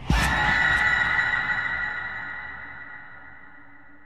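A horror music sting: a sudden hit followed by a high, ringing, dissonant tone that fades slowly.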